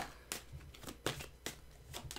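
Tarot cards being handled as one is drawn from the deck: a handful of light card clicks and slides, spaced about half a second apart.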